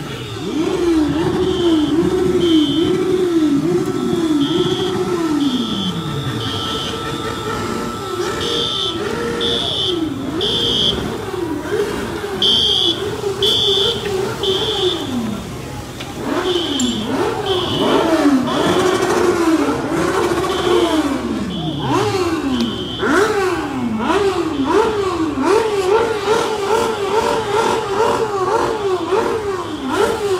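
An electronic alarm siren sounds throughout, its pitch sweeping up and down about twice a second and now and then gliding down in one long fall. A high beep pulses on and off over it.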